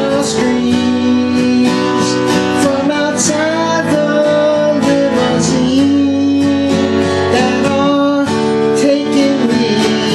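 A man singing while strumming a steel-string acoustic guitar, the chords struck in a steady rhythm under a sung melody line.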